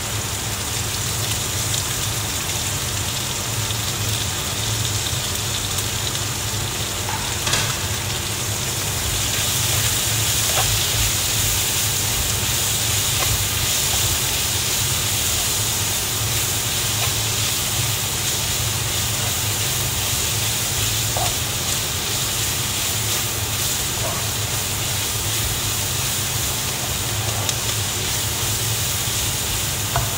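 Bacon, onion and sliced green onion sizzling as they are stir-fried in a wok, with occasional scrapes of the spatula against the pan. The sizzle is steady and grows a little louder about nine seconds in, over a steady low hum.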